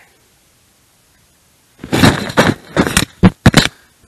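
Aerosol can of dry silicone lubricant sprayed through its straw in several short bursts, starting about two seconds in, to lubricate the lift cable pulley and its housing.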